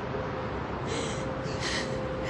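A woman crying: two short, sharp gasping breaths or sniffs in the second half, over steady outdoor background noise and a faint steady hum.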